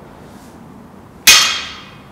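A single sharp metallic clang a little over a second in, ringing out for about half a second.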